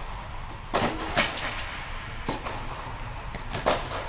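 Tennis ball struck by rackets and bouncing on the court during a rally, four sharp knocks spaced about half a second to a second and a half apart, over a steady low hum.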